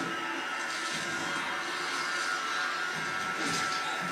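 Steady room noise: an even hiss with a thin, steady high whine running through it.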